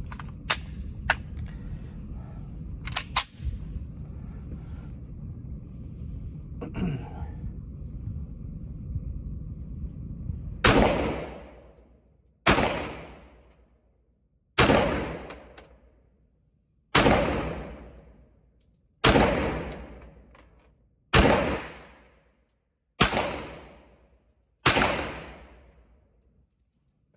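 Manurhin-built Walther P1 9mm pistol fired in slow single shots: eight shots about two seconds apart, starting about ten seconds in, each followed by a short echo fading out. Before the shots, a few sharp clicks from handling the pistol.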